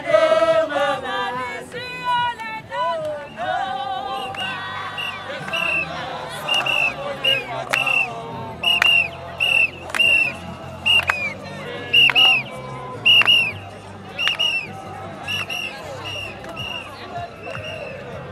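A group of women marchers singing together, the singing fading after a few seconds into crowd voices over which short high-pitched blasts repeat roughly once a second.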